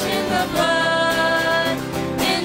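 Live church worship music: women's voices singing long held notes with a band accompanying.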